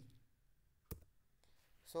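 A single sharp computer-keyboard key click about a second in: the Enter key being pressed to submit the typed input.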